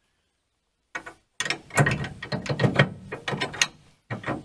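Steel ball mount shank being pushed into a trailer hitch receiver. There is a small click about a second in, then about two seconds of metal-on-metal scraping and clanking as it slides home.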